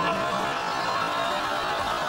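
Sitcom studio audience laughing, a dense, steady wash of crowd laughter that follows a punchline.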